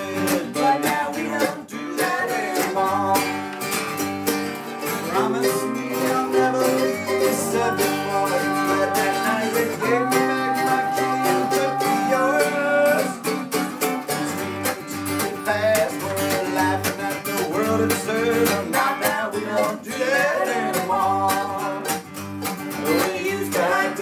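Acoustic folk band playing live: strummed acoustic guitar and picked mandolin, with voices singing over them.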